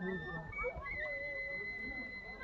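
Faint, indistinct human voices in the distance, with a thin steady high-pitched tone running underneath.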